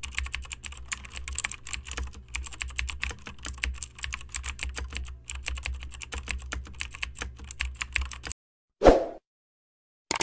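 Computer keyboard typing: rapid key clicks for about eight seconds, added as a sound effect to text being typed out on screen. A single short thump follows near the end.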